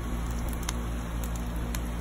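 Sap-fuelled fire burning around an orange in a foil pan, crackling with a few scattered sharp pops over a low, steady rumble.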